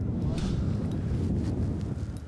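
Wind buffeting the microphone on open water, a steady low rumble.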